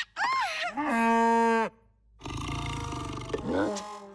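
Wordless cartoon character vocalising: a short wavering, rising-and-falling call, then one loud held note for almost a second that cuts off suddenly. After a brief gap a steady low hum comes in.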